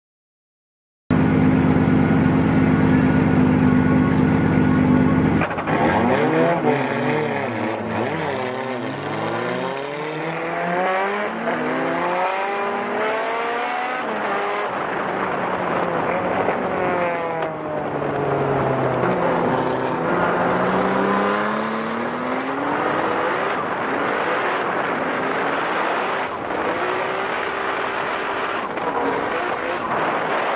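Nissan GT-R drift car's engine, loud, held at steady revs for a few seconds. From about five seconds in it rises and falls in pitch again and again as it is driven through a drift run, with tire noise and the engine of a second car close behind.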